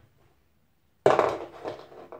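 A short breathy vocal sound from a man, starting suddenly about a second in and lasting about a second.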